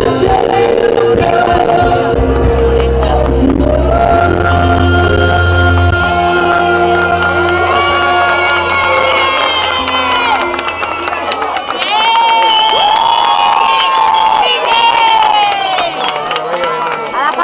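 Pop music played over a PA system, with long held notes and a heavy bass line that fades out after about six seconds; through the second half an audience cheers and children shout and whoop over the music.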